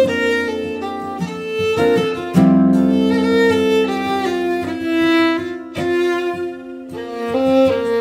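Fiddle and acoustic guitar duo playing a waltz: the fiddle bows long, sustained melody notes over strummed guitar chords.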